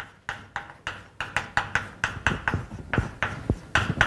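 Chalk writing on a blackboard: a quick, irregular run of sharp taps and short scrapes, about three or four a second, as capital letters are written.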